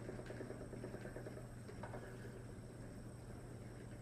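A wooden spinning wheel turning as wool is spun, giving a faint, steady low hum and soft whir.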